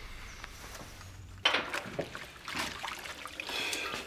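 Water splashing in a kitchen sink as dishes are washed up, starting suddenly about a third of the way in after a low hush.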